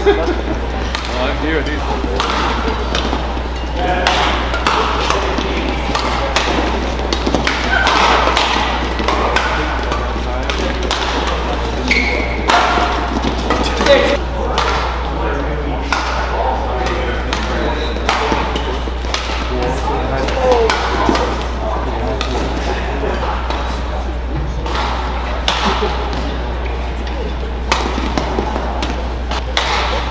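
Badminton rallies: racket strings striking the shuttlecock in sharp cracks at irregular intervals, over the voices of spectators in the hall.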